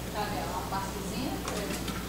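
Faint voices talking in the room under a low steady hum, with no one speaking into the microphone.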